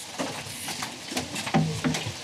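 A child knocking lightly on the glazed door of a mobile home: a few soft, scattered taps, too quiet to wake anyone inside.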